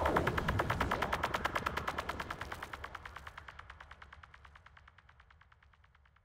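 End of a psytrance track: a rapid, evenly spaced stutter of sharp synth pulses over a low bass hum, fading out steadily.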